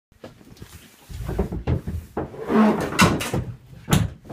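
A boat's cockpit floor hatch being lifted open: a series of knocks and a scraping slide, then a sharp thump near the end.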